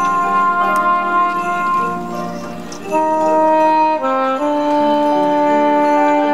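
Saxophone solo over a band's sustained brass chords, the notes held long and changing slowly. The sound softens about two seconds in, then the ensemble comes back in louder on a new chord about three seconds in.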